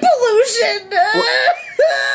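A high, wavering voice talking in a whiny, whimpering, crying-like tone.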